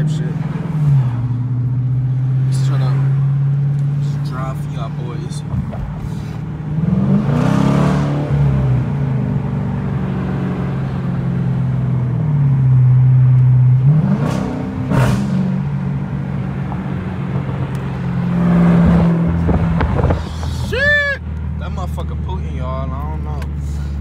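Dodge Challenger R/T's 5.7-litre Hemi V8 heard from inside the cabin while driving. Its note rises under acceleration and drops back a few times, with a couple of small exhaust pops, and it settles to a lower steady drone near the end. A short high chirp comes just before it settles.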